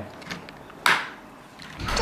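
A single short clack about a second in, from a small object handled on a hard surface.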